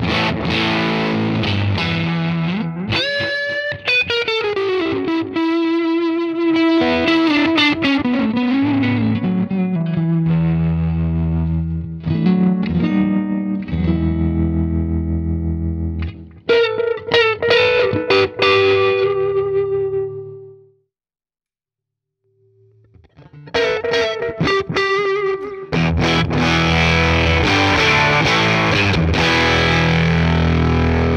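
Overdriven electric guitar played through a Fender Deluxe Reverb turned up to ten and recorded via a Universal Audio OX amp top box. A lead phrase with a string bend about three seconds in, long sustained notes and a slide down in pitch. There is a silent break of about a second and a half past the two-thirds mark, then the playing resumes.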